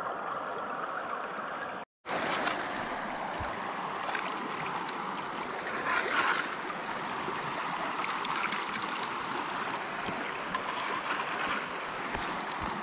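Creek water running steadily through a gold sluice box, broken by a momentary drop to silence about two seconds in. After it, dirt is scooped by hand from a bucket into the sluice, adding small scrapes and splashes over the water, loudest about six seconds in.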